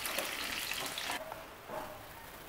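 Whole koi fish shallow-frying in hot mustard oil in a nonstick pan, a crackling sizzle. About a second in the crackle drops off abruptly, leaving a much fainter sizzle of the oil.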